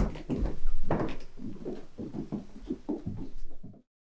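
Irregular footsteps, knocks and scuffs on a stage floor, starting with one loud thump. The sound cuts to dead silence just before the end.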